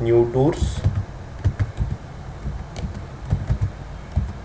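Keys tapped on a computer keyboard in quick, irregular succession as text is typed.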